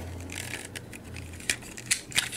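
Plastic parts of a transforming toy robot clicking and knocking together as they are handled and moved, with two sharper clicks about one and a half seconds in and near the end.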